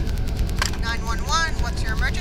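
A high-pitched voice speaking briefly, its pitch bending up and down, over a steady low rumble, with a short click just before the voice begins.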